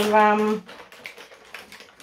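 A woman's voice trailing off in the first half-second, then faint, light clicks as the bath-product advent calendar and a small soap from it are handled.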